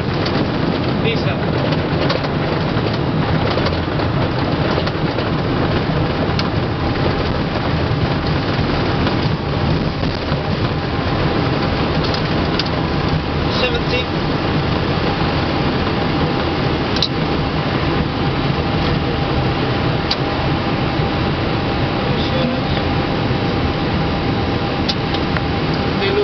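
Airbus A320 cockpit noise during the landing rollout: a steady rumble of engines and airflow with a thin steady whine.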